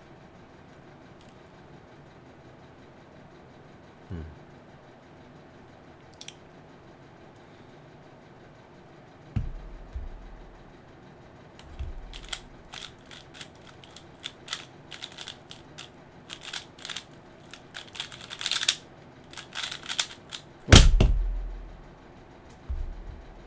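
Stickerless 3x3 speedcube being solved: after a quiet stretch of inspection and two soft knocks, a fast run of plastic clicks from the layer turns lasts about eight seconds, then a loud thump as the cube is put down and the hands hit the stackmat timer pads to stop it.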